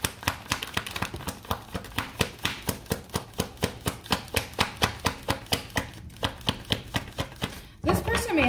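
A tarot deck being shuffled by hand, the cards slapping together in an even rhythm of about five a second.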